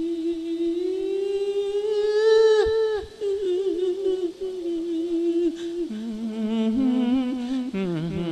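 A Buddhist monk singing a Thai sung sermon (lae) into a microphone, holding long wordless vocal notes that slide slowly upward and break off about three seconds in, then carry on. A second, lower steady tone joins near the end.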